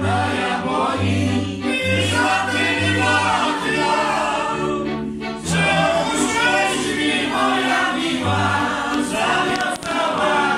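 A Górale (Podhale highland) string band of fiddles and a bowed basy plays a dance tune, with the bass sounding short repeated low notes beneath. The men sing along as a group over the fiddles.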